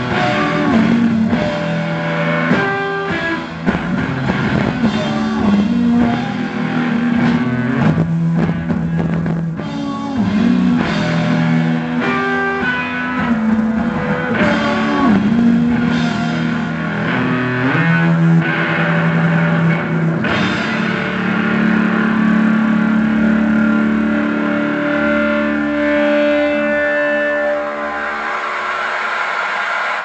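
Live rock band playing an instrumental passage on electric guitar, drum kit and keyboard, with no singing. The notes hold longer in the last third.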